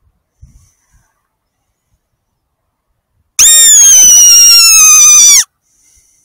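Mouth-blown fox call (a 'Best Fox Call' squeaker) blown once, loud and close, for about two seconds near the end: a shrill squeal that falls slightly in pitch, used to lure a fox in.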